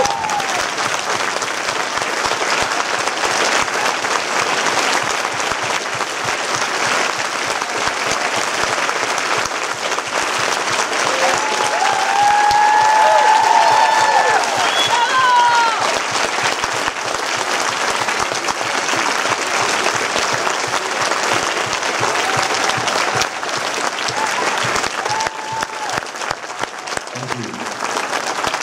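Large theatre audience applauding steadily. It swells to its loudest about halfway through, with a few voices calling out over it.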